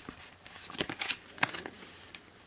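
Pokémon trading cards being handled and slid across one another in the hands, giving a few short, soft flicks and rustles.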